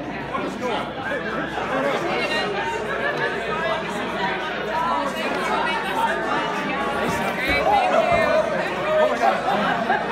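Audience chatter: many people talking at once in a large hall, with no single voice standing out.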